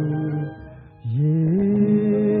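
A song's singing voice holds a long note, fades out about half a second in, then slides up into another long held note about a second in.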